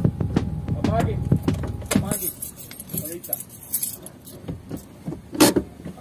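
Car interior: a low engine rumble in the first two seconds, light jingling clicks through the middle, and one sharp knock about five and a half seconds in, under brief muffled voices.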